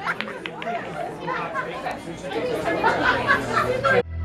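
Several people's voices chattering over one another, with a few sharp clicks near the start.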